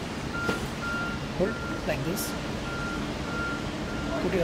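A high electronic beep repeating evenly, a little under two beeps a second, with voices heard briefly in the middle.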